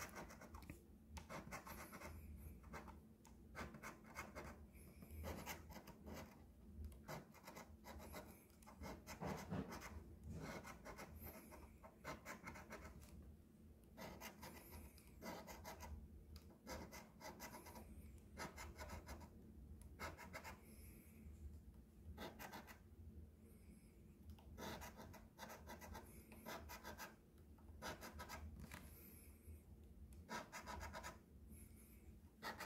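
Faint scratching of a coin edge rubbing the silver coating off a paper scratch-off lottery ticket, in quick clusters of short strokes with brief pauses between spots.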